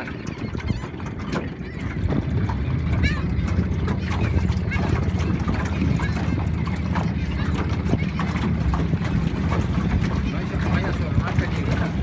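A small boat's motor running steadily as the boat moves over the water, a low hum that grows louder about two seconds in, with wind and water noise around it.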